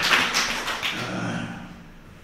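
A man's soft breath and a brief murmur close to a handheld microphone, with a few light clicks, fading away.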